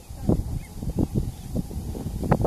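Common cranes giving several short, low calls in irregular succession.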